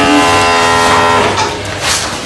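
A steady, held pitched tone with many overtones, rising slightly in pitch at the start and fading out about a second and a half in.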